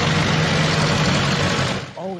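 Farm tractor engine running steadily, fading out just before the end.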